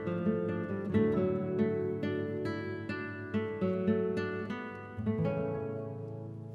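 Ensemble of six classical guitars playing a run of quick plucked notes, then striking a chord about five seconds in that rings and fades away.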